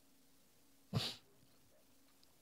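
A single short breathy vocal noise from a man at a close microphone, about a second in, lasting a quarter second. Faint room tone surrounds it.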